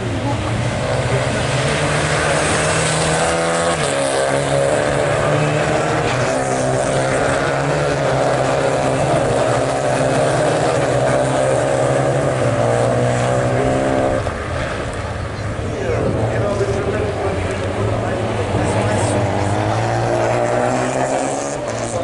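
Several Renault Clio rallycross race cars lapping the circuit, their engines running hard, with pitch rising and falling as they accelerate and lift. One strong engine tone cuts off about two-thirds of the way through.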